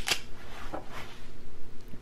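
Faint rustling and a few light clicks from a sheathing-tape retriever on a bamboo skewer being handled and set down onto an eraser on a stone countertop.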